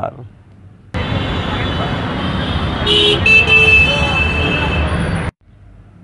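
City street traffic noise, with a vehicle horn honking about three seconds in. The street sound cuts in about a second in and stops abruptly near the end.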